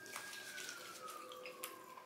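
Faint siren in the distance, a thin wailing tone slowly falling in pitch, with a few soft clicks from eating at the table.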